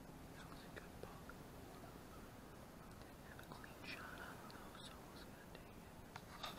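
Near silence: faint outdoor ambience with a few small ticks and rustles, a little louder about four seconds in.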